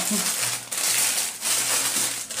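Clear plastic packaging bag crinkling as hands handle and press it, a continuous rustle with a couple of brief lulls.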